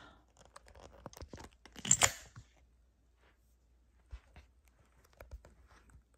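Handling noise from a camera being picked up and moved: a run of crackling, rubbing clicks, loudest about two seconds in, then a few scattered clicks.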